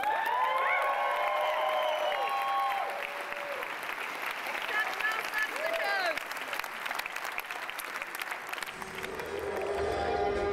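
A theatre audience applauding, with loud cheering shouts over the clapping in the first few seconds and again about five seconds in.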